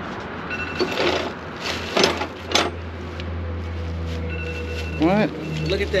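Rummaging in an open metal toolbox and lifting out a plastic-wrapped bundle: crinkling plastic and light rustles and clatter from the tools, in a few short bursts over a steady low hum.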